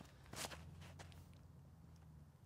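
Near silence, with faint footsteps and a shoe scuff on a concrete tee pad about a third of a second in as a disc golf drive is thrown, over a low steady hum.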